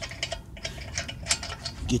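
Socket ratchet clicking in quick, irregular runs as a loosened lug nut is spun off a car wheel.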